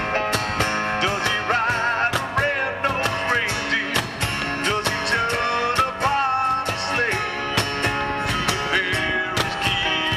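A live acoustic band playing a song: a male lead vocal over strummed acoustic guitars, with a cajon keeping a steady beat.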